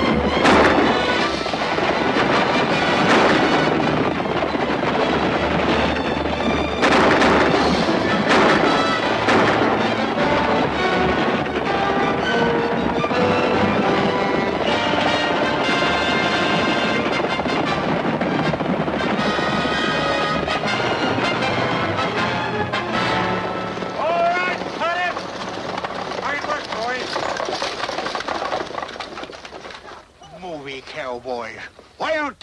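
Fast orchestral chase music on a 1940s western film soundtrack, with sharp gunshots cracking over it several times in the first nine seconds or so.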